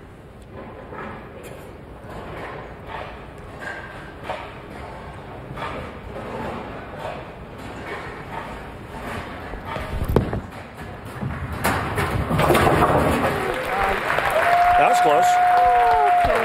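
Bowling ball dropped onto the wooden lane with a thud about ten seconds in, rolling, then knocking down the last standing 10-pin to convert the spare. The arena crowd then cheers and applauds, with a long whistle near the end.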